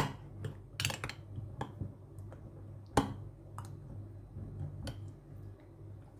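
A metal spoon stirring a thick milk, yogurt and seed mixture in a glass mug, clinking against the glass now and then, with the sharpest clink about three seconds in. A low steady hum runs underneath.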